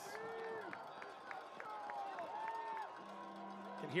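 Cowbells rung in the stadium crowd, a quick run of strikes about four a second that stops about two and a half seconds in, over faint crowd noise and distant voices.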